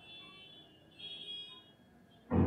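Marker pen squeaking faintly against a glass writing board as letters are written, in two short high-pitched squeaks about a second apart.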